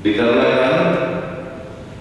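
A man's voice chanting a recitation into a microphone: one long melodic phrase that starts abruptly and fades away over about a second and a half.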